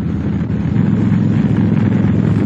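Honda Shadow V-twin motorcycle engine running steadily, a low, even pulsing exhaust note, with wind noise on the microphone.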